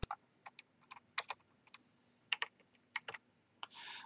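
Typing on a computer keyboard: about a dozen irregular keystrokes.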